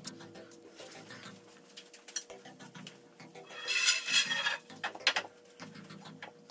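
A wooden 2x4 stud being handled and stood up in a door opening: a few knocks of wood and one loud scrape about four seconds in.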